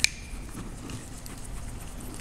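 Small steel parts of a mill stock stop being handled and fitted together by hand: one sharp metallic click at the start, then faint scraping and small ticks.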